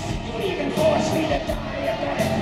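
Hard rock band playing live, electric guitars over drums, recorded from the audience in an arena.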